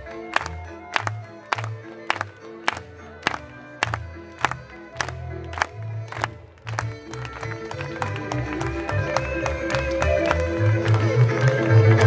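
Moravian folk band music for a verbuňk dance, with a sharp regular beat a little under twice a second. About six seconds in the music briefly drops away, then a fuller, faster tune comes in and grows louder.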